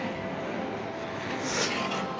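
A motor scooter passing on the road, a steady engine-and-tyre noise.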